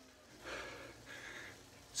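A man breathing hard and noisily from exertion, one long breathy rush beginning about half a second in. He is in the middle of a 20-minute effort at around 210 watts on a bike trainer, which he calls hard work.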